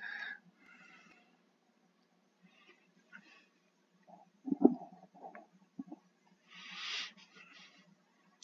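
Near silence in a pause of a man's narration, with a few faint low mouth sounds around the middle and a soft breath a second or so before he speaks again.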